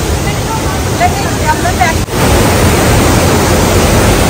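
Steady rushing of a waterfall and its cascading mountain stream, with faint voices over it in the first half. About two seconds in, after a brief break, the water sounds louder and closer.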